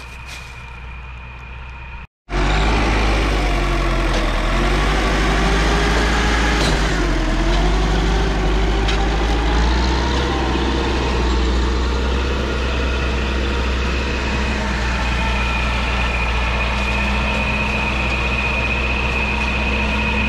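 LKT 81 Turbo forestry skidder's turbocharged diesel engine running loud and steady as it drags a load of oak logs. It comes in suddenly about two seconds in, and its pitch wavers briefly a few seconds later. A high whine above the engine grows stronger near the end.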